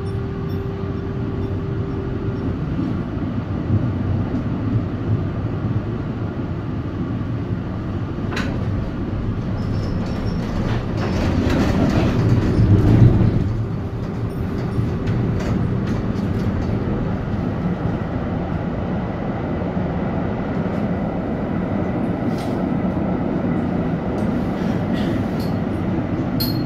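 Valmet-Strömberg MLNRV2 articulated tram running, heard from inside the passenger cabin: a steady low rumble of motors and wheels on rail, with a steady whine in the first couple of seconds. It grows louder for a couple of seconds around halfway, with a single knock a little before.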